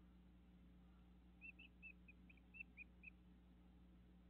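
A bird gives a quick series of about eight short, high chirps lasting under two seconds, faint over a steady low hum.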